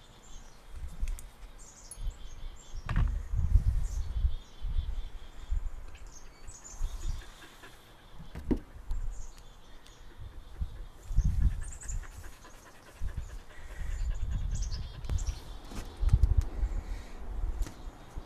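Small birds chirping on and off in short high calls over gusts of low rumbling noise, with a couple of sharp clicks.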